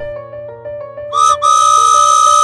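A whistle toots twice, a short note and then a long steady one, like a toy train whistle, over soft background music.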